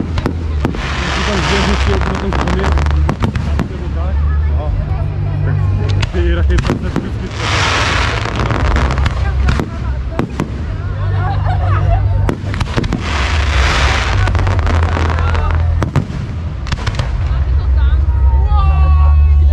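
Fireworks display: repeated sharp bangs of bursting shells, with three spells of dense crackling, at about two, eight and fourteen seconds in, over a steady low rumble.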